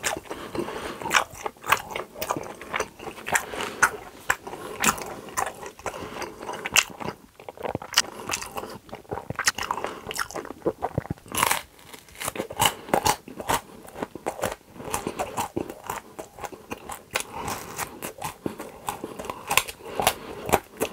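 Close-miked chewing: a man working a mouthful of food with his lips closed, making a quick, uneven run of short wet smacks and clicks.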